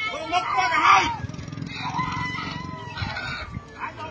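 A rooster crowing: one long drawn-out call starting about a second in, after a man's voice at the start.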